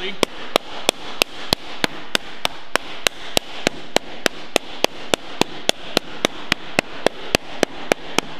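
Flat hardwood slapper striking a sheet-metal panel that rests on a lead-shot bag, in a steady run of about four sharp slaps a second, each with a short metallic ring. The blows stretch the panel down into the bag, raising a crown in one direction.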